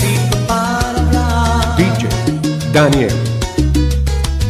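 Salsa music in a bass-boosted 'salsa baúl' car-audio mix, with a heavy bass line under steady percussion.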